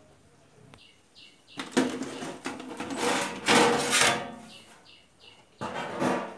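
Scraping and knocking as the metal cabinet of a Sony mini hi-fi unit is shifted about on the bench, loudest for about two seconds in the middle and again briefly near the end. Short high chirps sound twice, in the quieter gaps.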